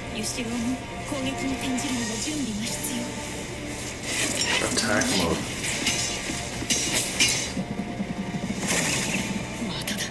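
TV-anime soundtrack: background music under a voice speaking Japanese in the first few seconds. In the second half come several sharp hits and impacts of fight sound effects.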